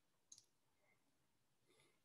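Near silence: room tone with one faint, short click about a third of a second in.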